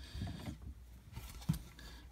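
Hard plastic graded-card slabs handled in the hands, with faint sliding and clicking and one short knock about one and a half seconds in.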